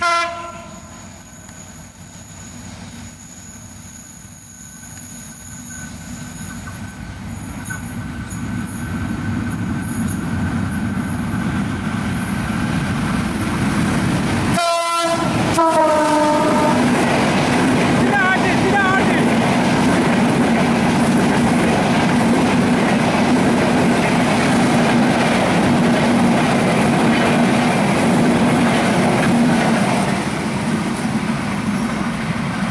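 Passenger train's diesel locomotive sounding its horn as it approaches. About halfway it sounds the horn again, slightly falling in pitch, as it runs close by. Then a loud, steady rumble and clatter of the coaches' wheels on the rails follows to the end.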